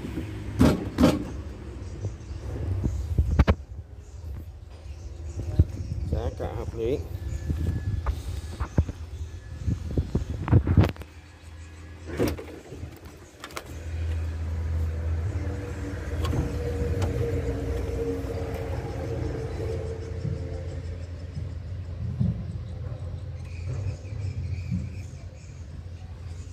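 Mini excavator's diesel engine idling: a low steady rumble that comes up louder about fourteen seconds in. A few sharp knocks sound in the first half.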